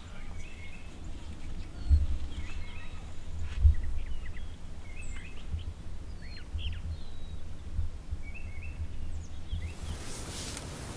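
Small birds chirping and calling in short, scattered notes over a steady low rumble, which swells briefly about two seconds in and again just before four seconds.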